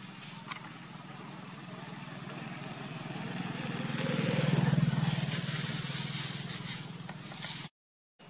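An engine hum that grows louder to a peak about halfway through and then fades, like a motor vehicle passing, over a hiss; the sound cuts off abruptly near the end.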